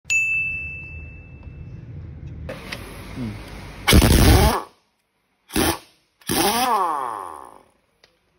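A single chime rings out and fades at the start. Then a heavy-duty impact wrench on a truck's wheel nuts runs in three loud bursts, a long one about four seconds in, a short one, and a last one whose pitch sweeps as the tool spins down, loosening the nuts to take the wheel off.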